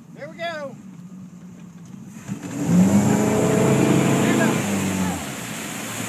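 Motorboat engine opening up to pull a water skier out of the water, its pitch rising as it accelerates, with rushing water and wind. The engine eases off a little about five seconds in.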